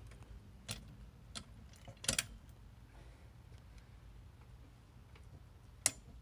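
A few scattered sharp clinks of steel chain links and bar against the wheel, the loudest a double clink about two seconds in and a single sharp one near the end, over a low steady hum.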